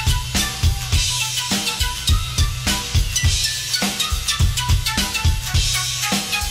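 Live band music: a drum kit playing a steady beat of kick drum and snare over heavy bass and pitched instruments.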